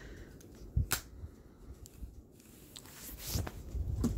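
Handling noise of a flip phone and the phone-held camera: one sharp click about a second in, then soft rustling and low bumps near the end.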